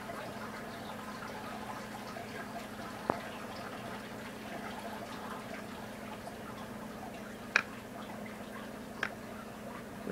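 Steady low background hum with a few short, sharp clicks spread through it, the loudest a little past the middle.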